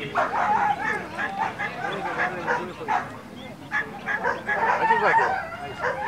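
Greyhounds in the starting boxes yelping and whining just before release, many short high calls overlapping one another.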